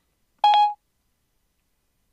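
Siri's short electronic chime on an iPhone running iOS 7: one brief steady tone about half a second in, signalling that Siri has stopped listening and is processing the request.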